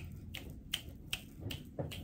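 Light finger snaps keeping a steady beat, about two or three a second.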